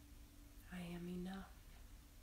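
A woman's short, soft vocal sound held at one steady pitch for under a second, starting about three-quarters of a second in, over a faint steady room hum.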